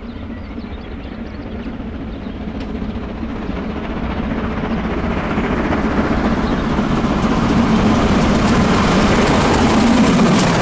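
Class 01 express steam locomotive 01 0509-8 approaching at speed with a passenger train, its rapid exhaust beat and running gear growing steadily louder until it reaches the camera near the end.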